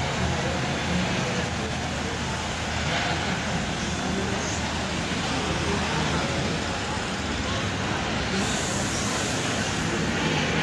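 Steady outdoor city ambience: road traffic running continuously with no single event standing out.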